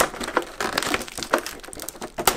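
Clear plastic packaging crinkling and crackling as hands work it off a new RC truck body, with irregular small clicks.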